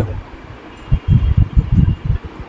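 Irregular low thumps and rumbling, starting about a second in, with a faint hiss above.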